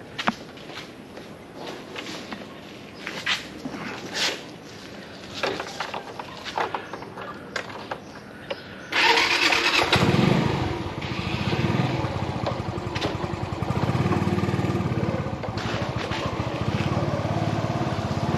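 Small motor scooter's engine starting about nine seconds in, after a few light clicks and knocks, then running steadily.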